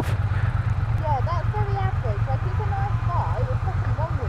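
Triumph Bonneville parallel-twin engines idling at a standstill, a steady, evenly pulsing low rumble.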